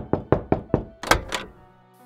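Knocking on a door: a rapid series of about eight knocks over roughly a second and a half.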